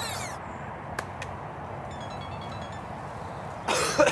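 Steady low outdoor rumble. A rising sound-effect glide fades out right at the start, and a short, loud burst of noise comes near the end.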